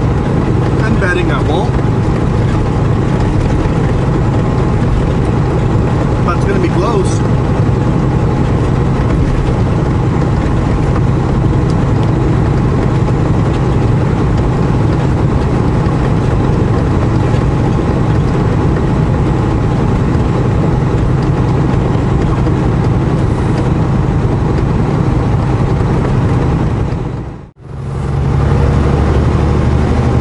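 Semi-truck engine and road noise droning steadily inside the cab at highway speed. Near the end the sound drops out briefly at a cut and comes back as a slightly different steady drone.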